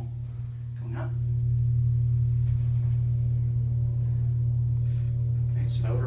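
Hydraulic elevator's Kone pump motor starting and running as the car travels up: a steady low hum with fainter steady overtones that builds over the first couple of seconds, then holds.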